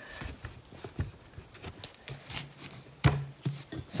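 Quiet handling of a stretched canvas on a tabletop: faint scrapes and small taps as the wooden frame is moved and pressed down, with one sharper knock about three seconds in.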